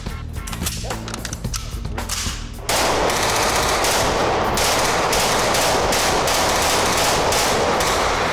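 Full-auto fire from a CZ Bren rifle in 5.56 on an indoor range. Separate shots and short bursts in the first couple of seconds give way, about three seconds in, to one long, continuous burst.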